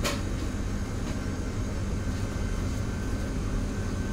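Steady low hum of running commercial kitchen equipment, with a faint steady high tone over it and a short click right at the start.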